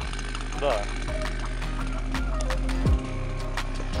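Two-stroke chainsaw engine idling steadily, with a few sharp clicks as the saw is carried.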